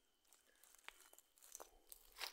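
Near silence with a few faint crackles of dry leaf litter being stepped on, the last three coming close together near the end.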